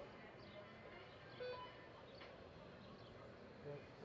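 Near silence in a large arena: faint, distant voices of people talking.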